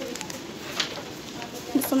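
A few soft crinkles from a plastic wet-wipes packet being handled, over low shop background noise; a woman begins speaking near the end.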